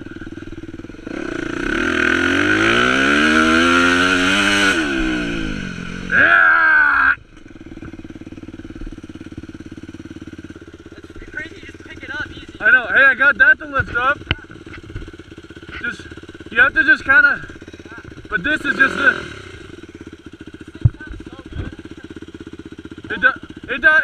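Four-stroke dirt bike engine accelerating, its pitch climbing over a few seconds and then easing off, with a quick fall in revs about seven seconds in. After that it runs at a lower, steady idle with short throttle blips.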